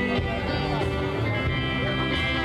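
Indorock band playing live, with electric guitars over a steady band backing.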